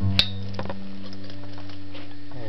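A century-old 5/8-size upright bass, unamplified, sounding a low steady note on its open E string. A sharp click comes about a fifth of a second in.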